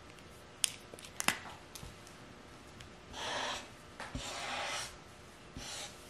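A few sharp clicks in the first second and a half, then felt-tip marker strokes on paper: two longer scratchy strokes about three and four seconds in and a short one near the end.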